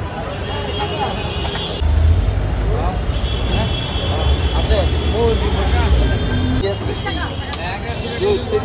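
Busy street ambience: many people talking over one another, with a motor vehicle's low engine rumble that swells about two seconds in and fades near the end.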